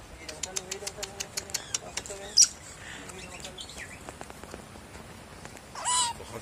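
Pet otter chirping and squeaking: a run of quick clicks in the first two seconds, a sharp high squeak about two and a half seconds in, a few short chirps, and a louder call near the end.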